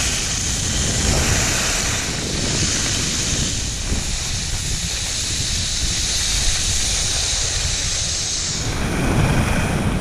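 Wind buffeting the microphone of a camera skiing downhill, with a steady high hiss of skis sliding over packed snow that fades near the end.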